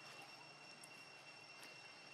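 Near silence: faint outdoor ambience with a thin, steady high-pitched whine and a few faint ticks.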